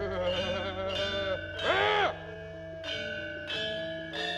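Javanese gamelan accompaniment: struck bronze metallophone notes ringing on, with a wavering, voice-like melodic line over them in the first second and a half and a short rising-and-falling, voice-like glide about two seconds in.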